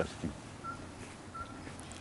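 A bird giving a single short whistled note twice, about two-thirds of a second apart, over faint outdoor background noise.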